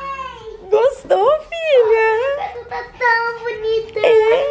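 A little girl's high-pitched voice making drawn-out vocal sounds that slide up and down in pitch, with a few short breaks.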